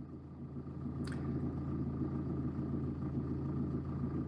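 Quiet, steady low hum and rumble in the background, with one faint tick about a second in.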